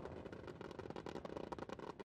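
Faint, dense crackling from explosive rounds striking the ground and bursting into showers of sparks.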